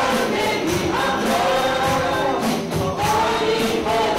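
A man and a woman singing a Persian-language Christian worship song together, amplified through microphones, with a band keeping a steady percussion beat.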